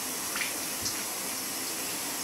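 Bathroom sink tap running steadily, warm water for rinsing a washcloth.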